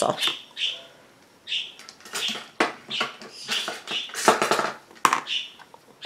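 Pet bird chattering in a quick string of short chirps and squawks, with a few light clicks among them.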